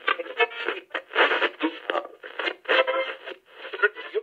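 Thin, narrow-band audio that sounds like an old radio broadcast: a choppy run of voice-like bursts with some music mixed in, playing under the channel's intro logo.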